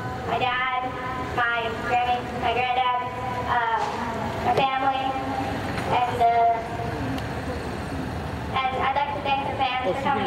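A girl's voice speaking into a microphone, her words unclear, over a steady low background rumble.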